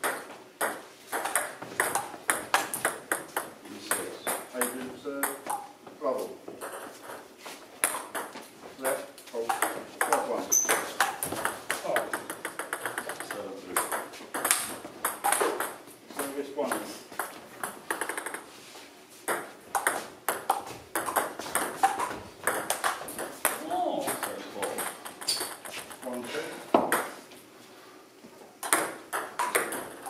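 Table tennis rallies: a plastic ball clicking quickly off bats and the table, in runs broken by short pauses between points.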